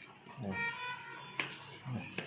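A cardboard product box being opened by hand, with a sharp click about halfway through as a flap comes free and a smaller one near the end, over background music with sustained notes.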